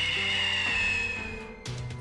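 Dark background music under the narration: a steady low drone with a high, held tone that sinks slowly in pitch and fades out about a second and a half in.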